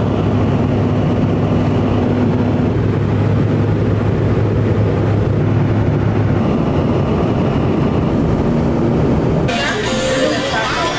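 Airliner cabin noise in flight: a loud, steady rush of jet engines and airflow with a low hum. It cuts off abruptly near the end.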